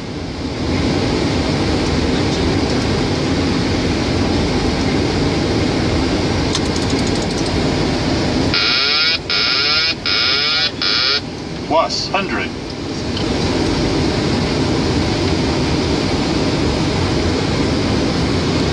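Steady cockpit noise of a Boeing 737 on final approach: rushing air and engine sound. About halfway through, a loud warbling electronic alert tone sounds in a few short pulses for about three seconds, then stops.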